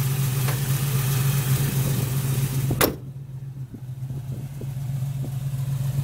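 1972 Chevrolet Camaro's 350 small-block V8 with headers idling steadily. A single sharp click comes about halfway through.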